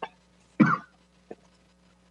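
One short cough a little over half a second in, followed by a small tick, over a faint steady low hum from an open meeting microphone.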